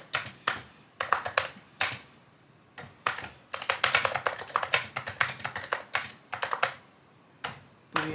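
Typing on a Texas Instruments TI-99/4A computer keyboard. A few separate key presses come first, then a quick run of keystrokes from about three seconds in, and one last key press near the end.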